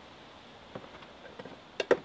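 Tin cans being handled on a table: a few faint clicks, then two sharp clinks close together near the end.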